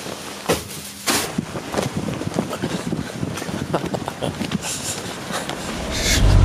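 Footsteps and handling rustle from a walking, hand-held camera, with irregular short crackles and a sharper click about a second in. A low rumble starts building near the end.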